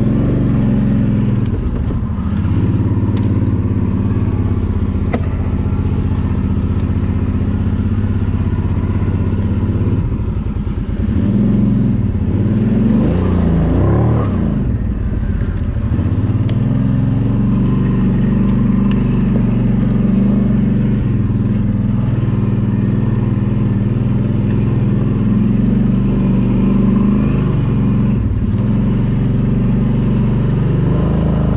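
ATV engine running steadily, heard up close from on board the quad. Around the middle the revs rise and fall, then the engine settles back to a steady note.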